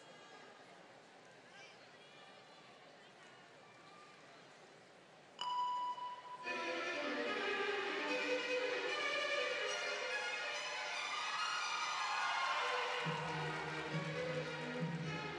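A hushed arena hall for about five seconds. Then a sudden steady high note sounds and classical orchestral music with violins begins, rich and sustained, with low strings coming in near the end.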